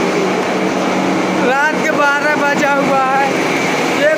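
Workshop machinery running with a steady drone and hum. A man's voice comes in over it from about a second and a half in.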